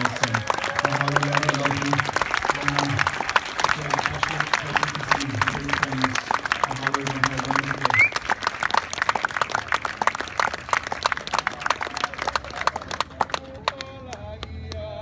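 A low voice chanting in long held phrases, over continuous audience applause and clapping. The chant stops about halfway through, and the clapping dies away shortly before the end.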